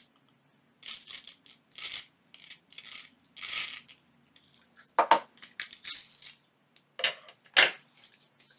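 Gold sequins rattling and clinking as they are tipped out of a small jar into a paper shaker pocket, in a string of short, irregular rustling bursts with a few sharper clicks.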